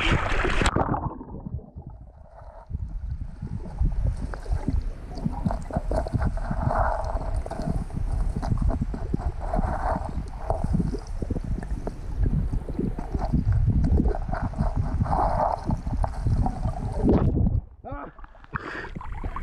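Underwater sound from a submerged camera: a muffled low rumble of moving water with many small clicks and clatters of river gravel being fanned by hand across the bed. The sound turns muffled less than a second in as the camera goes under, and opens up again just before the end as it comes back to the surface.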